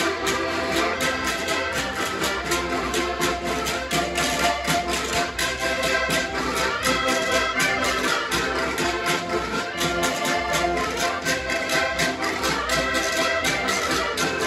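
Several diatonic button accordions playing a lively traditional Portuguese folk tune together in a steady, even rhythm.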